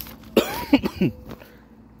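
A man coughing, two or three quick coughs about half a second in.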